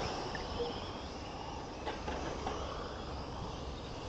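Faint, steady high-pitched whine of small electric RC race cars' motors and gears running on the track, over a low background rumble.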